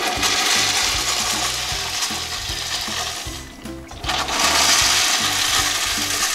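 Wall urinal flushing: water rushing loudly through the bowl. The rush dips briefly a little past halfway, then surges back and runs on.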